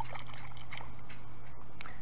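Shallow seawater sloshing and trickling as a hand swishes a crusty coin through it to rinse it, over a steady low hum.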